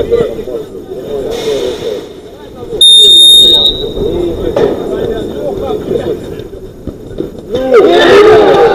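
A sports whistle blown once, a steady high blast lasting just under a second, about three seconds in. Players' shouting runs around it.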